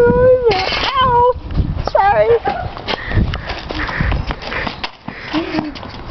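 Three short, high-pitched squealing cries from the play-fight in the first two and a half seconds, then jumbled rustling, scuffling and microphone handling noise.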